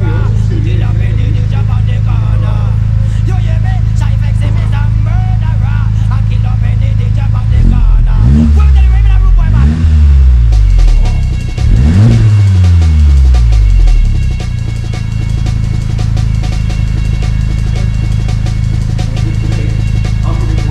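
VW Golf GTI Mk7.5's turbocharged four-cylinder idling through a newly fitted Milltek resonated cat-back exhaust. Near the middle it is revved three times, each rev climbing and dropping back to idle.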